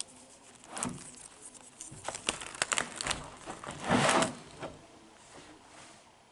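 Handling noise from a spiral-bound photo album with plastic-sleeved pages: a scatter of clicks and crinkles, with a louder rustle about four seconds in as a page is moved.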